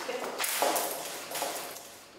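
Paper sheets and a plastic folder rustling and knocking as they are handled in a hurry, in a few rough bursts with light taps.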